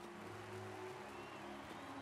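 Faint soundtrack audio from the animated episode: a few low held tones that shift pitch a couple of times, over a soft hiss.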